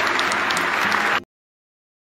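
Audience applauding, a dense steady clapping that stops abruptly a little over a second in.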